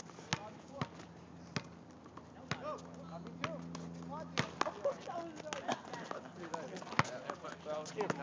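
A basketball bouncing on an asphalt court, a series of irregularly spaced sharp thuds, the loudest about seven seconds in.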